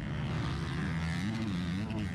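KTM motocross bike's engine running, its pitch rising and falling a few times with the throttle as the bike gets going again after a tip-over.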